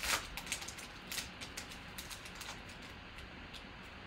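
Foil trading-card pack wrapper crinkling as it is peeled back and the cards are slid out. A cluster of crackles in the first second or so thins to scattered faint ticks.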